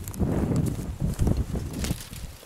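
Footsteps of a person walking through dry grass and brush: a run of uneven low thuds, with brief crackles and swishes of twigs brushing past.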